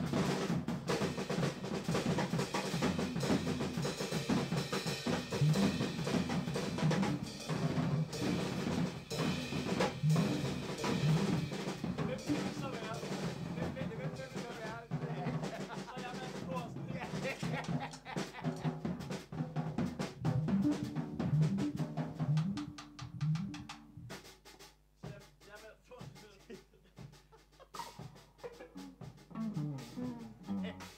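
Small jazz band playing live, with the drum kit loudest and close up: busy snare strokes, rolls and cymbal, over electric guitars. About two-thirds of the way in, the playing thins out and gets quieter, leaving sparse plucked guitar notes and light drum touches.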